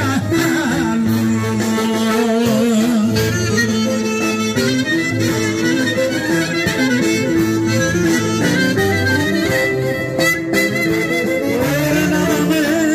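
A live band amplified over loudspeakers plays Greek folk dance music: a wavering, vibrato-laden melody line over a steady, repeating bass beat.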